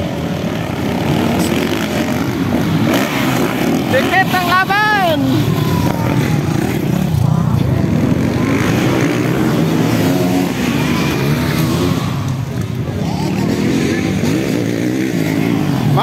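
Motocross dirt bikes running and revving around the track, a steady engine din throughout, mixed with crowd voices and a man's loud call about four seconds in.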